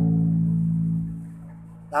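Four-string electric bass with its open A string plucked and ringing out as one sustained low note, loud for about a second and then fading away.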